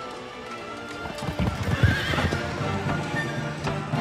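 Horses galloping, a dense run of hoofbeats starting about a second in, with a horse whinnying around two seconds in, over a film music score.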